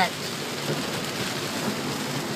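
Heavy tropical downpour falling on a car's roof and windshield, heard from inside the cabin as a steady, even rush.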